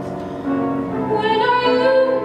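A female voice singing long held notes, moving to a new note about half a second in and stepping higher about a second in.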